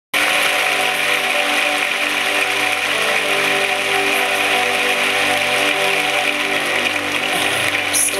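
A large audience applauding over sustained opening chords of a song. The applause thins near the end while the music carries on.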